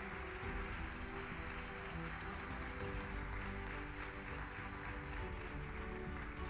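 Audience applauding over music with held notes.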